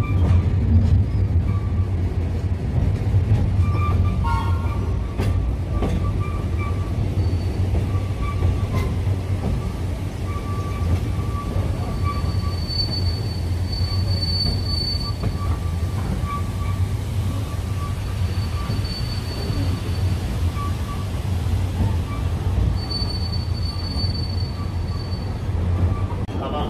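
Ikawa Line train running, heard from inside the carriage: a steady low rumble with thin, high wheel squeals that come and go on the curves as it works down the 90‰ rack-assisted grade.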